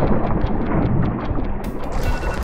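Water splashing and churning at the surface as a released pike swims off from a hand, with wind rumbling on the microphone.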